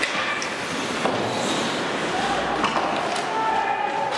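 Ice hockey play in a rink: a few sharp clacks of sticks and puck, at the start, about a second in and near three seconds, over steady, echoing arena noise with scattered spectator voices.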